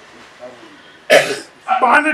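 A man clears his throat once, a short, loud, rasping burst about a second in, close on a handheld microphone; he starts speaking again just before the end.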